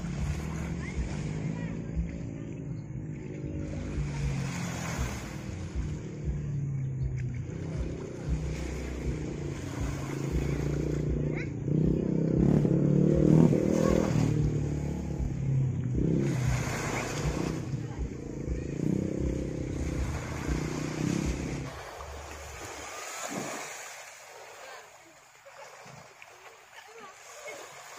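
A small boat's engine running steadily with a low drone, loudest about halfway through and fading out a few seconds before the end, over the wash of small waves on the shore.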